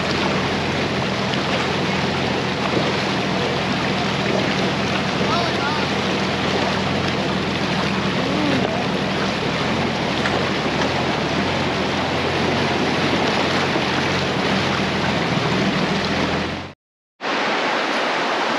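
Nissan Patrol 4WD driving through a shallow creek crossing: a steady, loud rush and splash of water thrown up by the front wheel, with the engine's low hum underneath. It cuts off suddenly near the end, giving way to the steady rush of a small waterfall.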